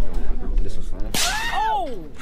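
Phone microphone rubbing and knocking against clothing as the phone is handled, then about a second in a person's voice rising and falling in pitch in a drawn-out wordless exclamation.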